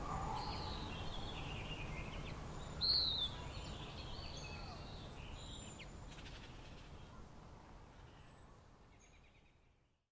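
Birds chirping over faint background noise, with one louder falling chirp about three seconds in, the whole fading out to silence near the end.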